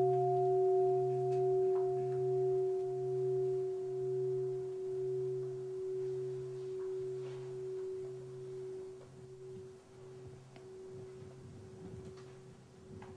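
A Buddhist bowl bell (mindfulness bell), struck just before, rings on and slowly fades. Its low hum pulses about once every two-thirds of a second as it dies away.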